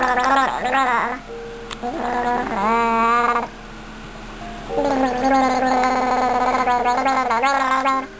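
A baby gurgling through milk in her mouth and throat, a wavering, high-pitched voice with a bubbly, gargling quality. It comes in three stretches: the first second, a shorter one about two seconds in, and a long one from about five seconds in to the end.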